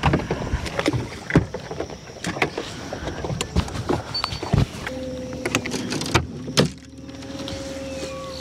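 Choppy water slapping against a bass boat's hull, with sharp knocks on the deck throughout. From about five seconds in, a steady electric hum joins in, most likely the bow-mounted trolling motor running.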